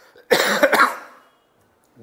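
A man coughing into his fist: a short run of harsh coughs starting about a third of a second in and over within a second.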